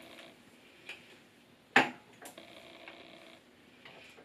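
A few light clicks and taps of small dropper bottles being handled on a counter, the sharpest about two seconds in.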